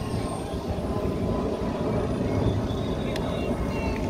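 Wind rumbling on the microphone, a steady low rumble, with a brief faint click about three seconds in.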